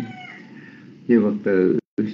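A voice speaking Vietnamese over an internet voice-chat link, starting about a second in after a quieter stretch. The audio drops out completely for a split second near the end.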